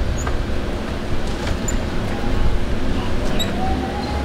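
City street ambience: a steady low rumble of traffic and engines, with faint background voices and a few faint high chirps.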